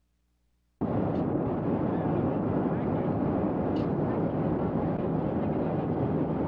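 Steady jet airliner cabin noise in flight, cutting in suddenly about a second in and holding at an even level.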